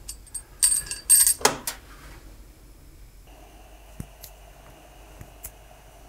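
Metal lid clinking and clattering briefly as it is set on a stainless steel stockpot of simmering alder-cone dye bath. About halfway through, a steady mechanical hum begins, with a few faint ticks over it.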